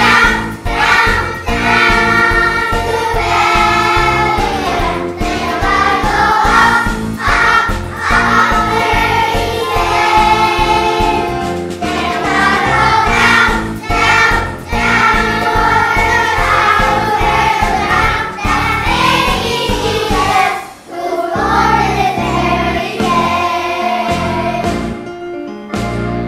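A choir of young children singing a Christmas song together over instrumental accompaniment with a steady beat. The voices break off briefly near the end, then carry on.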